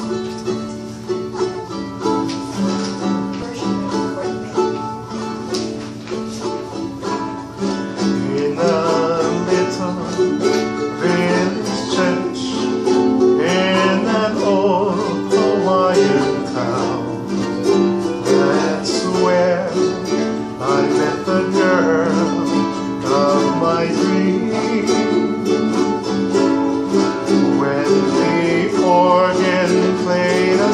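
A ukulele strummed in a steady chordal accompaniment for a slow song. From about eight seconds in, a singing voice carries a wavering melody over it.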